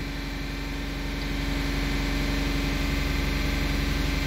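Audi A8 V-engine running steadily at about 2,800 rpm, heard from inside the cabin, held there by the VCDS basic setting during the intake manifold runner (swirl flap) motor adaptation with brake and full throttle pressed. It gets a little louder about a second in.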